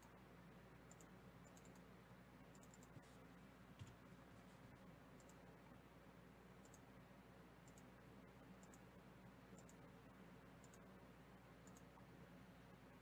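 Near silence with faint, scattered clicks from a computer mouse and keyboard, irregular and a second or so apart, over a low steady hum.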